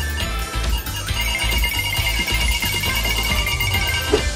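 Background music with a high, steady electronic beeping tone that starts about a second in: a supermarket checkout barcode scanner beeping as items are scanned.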